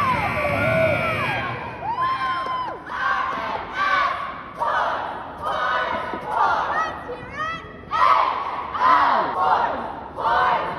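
Cheerleading squad shouting a cheer in unison, in short rhythmic bursts about once a second.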